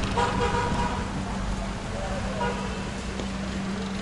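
Street traffic with a steady low engine hum, a car horn sounding briefly near the start, and faint voices about two seconds in.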